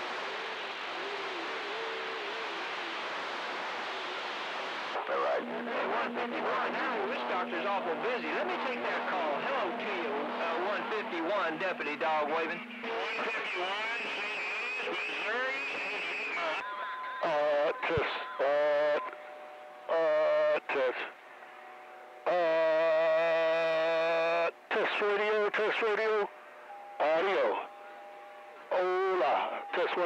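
A communications receiver tuned to CB channel 6 (27.025 MHz) picks up the radio band. The first five seconds are static hiss. Then overlapping weak stations come through with whistles and steady carrier tones, and from about seventeen seconds stations key up in short, abruptly starting and stopping bursts of distorted, unintelligible voice and tones.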